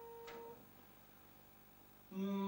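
The last faint ring of a grand piano chord, damped about half a second in, with a faint click just before it stops; then near silence.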